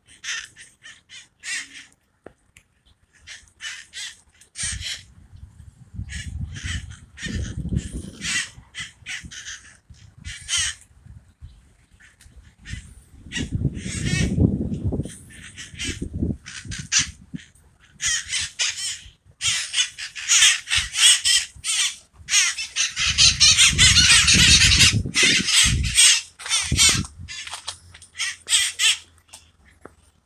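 A flock of wild parakeets screeching from the treetops, in short harsh calls. The calls are scattered at first, then pile into a near-continuous squawking chorus in the second half before thinning out. Bouts of low rumble come and go underneath.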